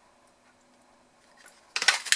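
Near silence, then about 1.7 s in a quick cluster of sharp clicks and clacks from a large handheld gingerbread-man craft punch pressed down through cardstock to cut out the shape.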